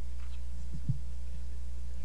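Steady low electrical hum from the PA system. About a second in there are a few soft, low thumps of the microphone being handled as it is passed over and set on its stand.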